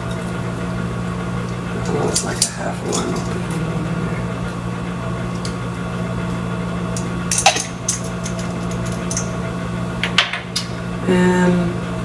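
A steady electric hum from a running kitchen appliance motor, with scattered light clinks and taps of small spice jars and the pot being handled. The sharpest clink comes about seven and a half seconds in.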